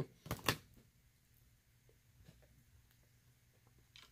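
Two sharp clicks of hard phone cases knocking together as phones are handled in a pile, then near quiet with a few faint taps.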